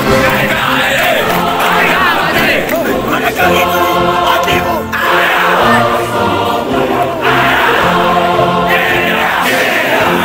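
Music with a choir of many voices singing, holding long chords twice in the middle stretch.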